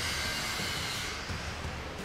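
Workshop room tone: a steady low hum with a hiss that fades out about a second in.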